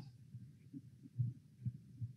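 Quiet pause with a few faint, low, dull thumps, the clearest two in the second half.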